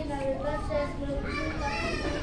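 A young girl speaking into a handheld microphone.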